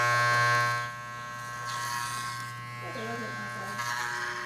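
Electric hair clippers buzzing with a steady hum, running through a boy's hair. The buzz is loud at first and drops to a quieter level about a second in.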